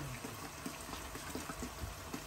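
Water running or being poured: a steady trickling hiss, with small clicks.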